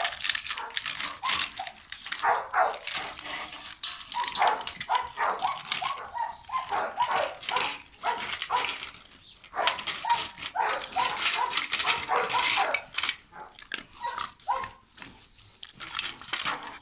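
Dogs barking, many short barks in quick succession, thinning out near the end.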